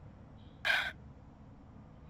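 A single short audible breath from a person, lasting about a quarter second, over faint background hiss.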